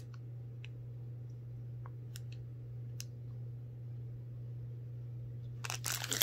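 Quiet room with a steady low hum and a few faint clicks, then, about half a second before the end, the plastic wrapper of a keto snack bar crinkling as it is handled.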